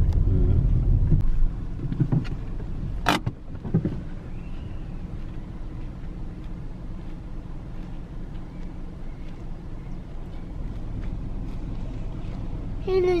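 Steady low rumble of a car rolling slowly, heard from inside the cabin. It is louder for the first second or so, then settles quieter. A single sharp click comes about three seconds in.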